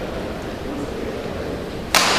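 Steady hall background, then near the end a single sharp crack of a badminton racket striking the shuttlecock on a serve, ringing briefly in the hall.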